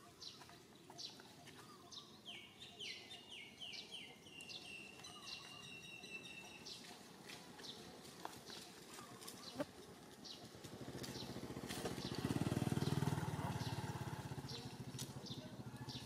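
Birds chirping in the background, short calls repeating about every second, with a quick descending run of notes a few seconds in. In the second half a low rumble swells, peaks and fades, the loudest sound.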